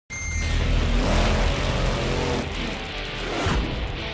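Opening graphics sting: music mixed with drag-race engine noise, starting abruptly, with a whoosh about three and a half seconds in.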